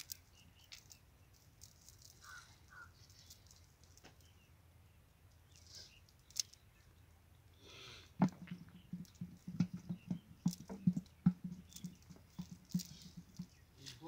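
Fishermen handling a cast net and picking out the catch by hand: faint rustling and clicks of the net at first, then from about eight seconds in a quick, irregular run of low thumps and taps.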